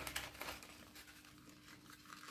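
Faint rustling and scraping of thin paper strips handled and slid one inside another, with a few light crackles near the start, over a faint steady hum.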